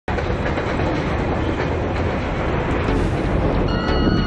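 Roller coaster train rumbling along steel track, a steady roar with clattering. Near the end, high held tones come in over it.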